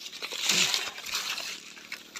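Rustling and crackling of leaves and undergrowth, loudest about half a second in and again around a second in.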